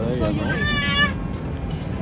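A small child's high-pitched, meow-like cry that rises and falls, loudest about half a second to a second in, over the steady low drone of an airliner cabin.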